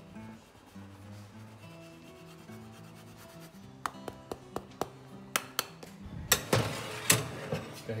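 Hard Italian cheese rasped on a hand grater: a few sharp clicks, then several loud scraping strokes near the end, over steady background music.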